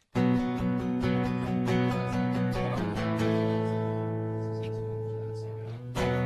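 Guitar chords strummed and left to ring out while the guitar is tuned between songs: one chord at the start and another about three seconds in, each fading slowly.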